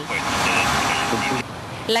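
City street traffic: engines and road noise with a few short, high-pitched beeps over it, cut off abruptly about one and a half seconds in.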